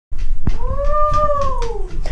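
A single long howl-like vocal call that rises slightly and then falls away, over rumbling handling noise and knocks.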